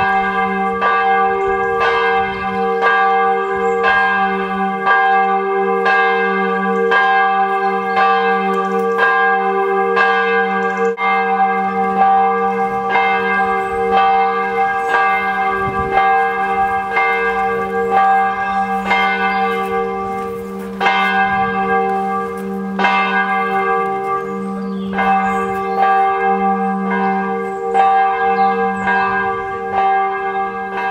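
Church bell tolling steadily, about one stroke a second, its hum ringing on between strokes.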